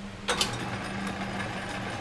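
Atlas 10F metal lathe switched on with a sharp click about a quarter second in, then running steadily with its chuck spinning and a mechanical whirr of motor, belts and gearing.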